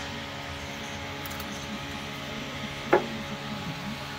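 Rubber transmission cooler hose being worked off its radiator fitting by hand, with one short sharp sound about three seconds in, over a steady workshop hum.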